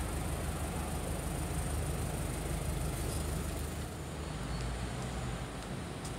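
Steady low rumble of street traffic and idling engines, with a faint high hiss over it.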